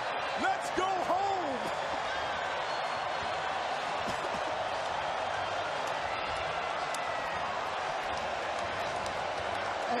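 Steady noise of a large arena crowd, with a man's voice in the first second or two.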